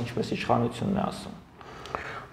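Speech: a man talking in Armenian, trailing off into a brief pause.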